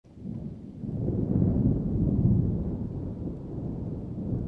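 Deep rolling rumble of thunder, swelling over the first second and then slowly easing.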